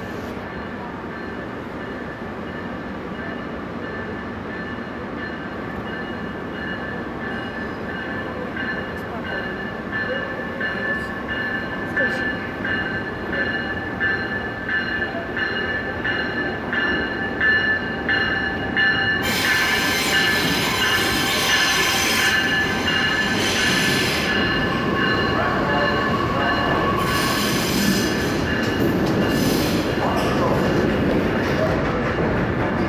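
Metra Electric bilevel electric multiple-unit train arriving at a platform: a steady whine with evenly spaced clicks of wheels over rail joints growing louder as it approaches. About two-thirds of the way in, a loud high hissing and squealing of wheels and brakes sets in as the cars pass close and slow, returning briefly near the end.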